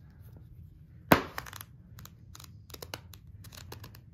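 A paperback book handled and its pages flipped: a sharp snap about a second in, then a quick run of papery flicks as the pages are riffled through.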